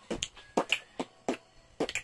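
A quick run of sharp clicks or snaps, irregularly spaced, several a second.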